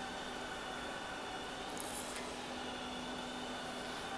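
Quiet, steady background hum of a factory hall with the roll-forming machine not yet running, with a brief soft rustle near the middle.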